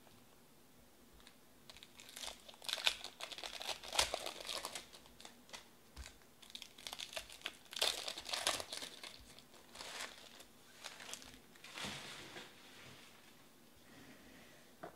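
Foil trading-card pack wrappers crinkling and tearing as packs are opened by hand, in irregular bursts of crackle.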